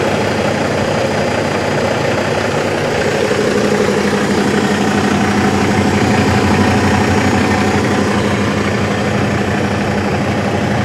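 Diesel engine of a 2022 Hongyan Genlyon C500 8x4 truck idling smoothly, a steady, even hum.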